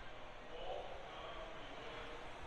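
Quiet ambience of a large indoor hall, with faint, indistinct voices in the background.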